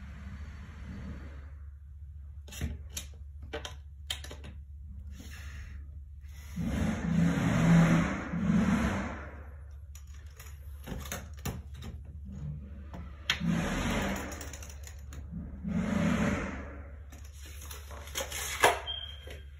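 Handling noise from working at a toilet flange on a tiled floor: scattered light clicks and knocks over a steady low hum, with three longer rubbing, rustling sounds, the loudest a few seconds long from about a third of the way in and two shorter ones near the end.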